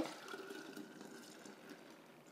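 Faint, steady pouring of a thick milk-and-cream ice cream base from a plastic pitcher into an ice cream maker's bowl.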